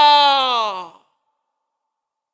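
A man's voice holding one long, emphatic "naaa" ("no"), its pitch slowly falling, ending about a second in.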